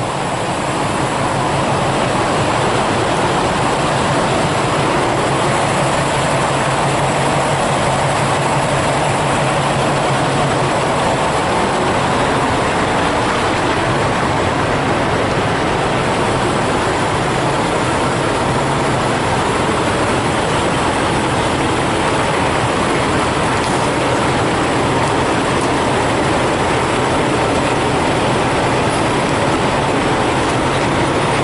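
Semi-truck diesel engine running as the tractor-trailer backs slowly into a parking space: a steady, even noise with a faint low hum underneath.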